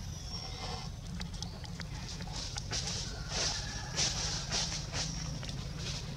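Infant monkey giving a quick run of short, high-pitched squeaks, about a dozen in three seconds starting a little over two seconds in, over a steady low hum.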